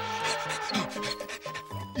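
Cartoon background music with a character laughing over it in short, raspy, repeated puffs.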